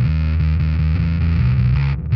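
Electric bass played through a Sinelabs Basstard fuzz pedal: a heavily distorted riff of low notes changing pitch, with a brief break at the very end.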